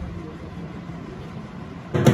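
Steady, low rumbling background noise with no clear single source. A dhol drum cuts in loudly right at the very end.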